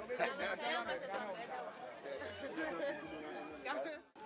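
Several people talking at once, overlapping chatter with no other sound standing out.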